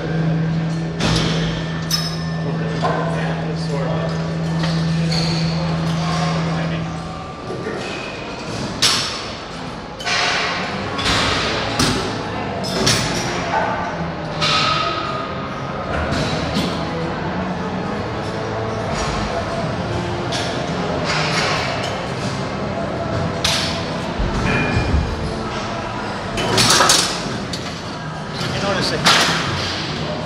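Plate-loaded seated row machine worked through a heavy set: repeated knocks and thuds of the loaded weight plates and metal arms, about one every second or so at irregular spacing. Gym background voices run underneath.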